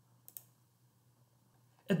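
A computer mouse button clicking, two quick sharp clicks close together, over a faint low hum.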